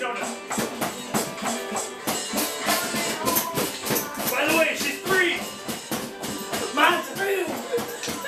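A drum kit being played in a quick, busy pattern of hits with a rattling, shaker-like high end, while a voice joins over the beat around the middle and again near the end.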